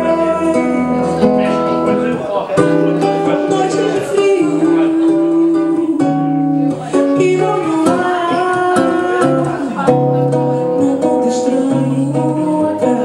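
A woman singing into a microphone, amplified, with held notes over a strummed acoustic guitar.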